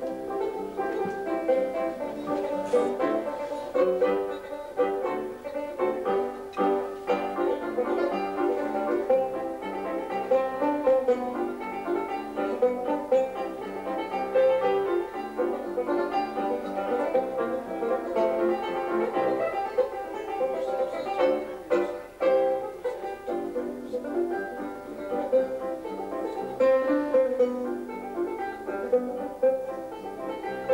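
Classic-style fingerpicked 5-string banjo, a Wyman set up with heavy strings for a deep tone, playing a busy run of plucked notes, accompanied by piano.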